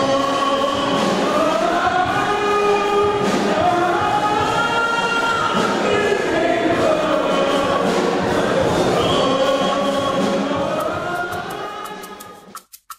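A choir singing, with long held notes, fading out near the end.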